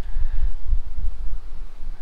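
Wind buffeting the microphone: a gusty low rumble that rises and falls.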